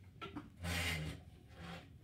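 Handling noise: a couple of light clicks, then a short rubbing scrape about half a second in and a fainter one near the end.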